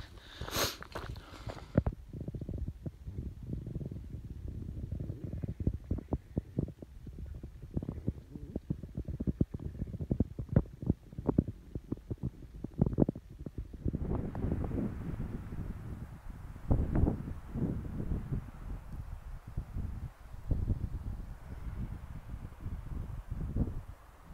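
Low rumbling and irregular bumps on a handheld phone microphone carried along a hiking trail, the sound of handling and walking. About fourteen seconds in the rumble turns broader and hissier.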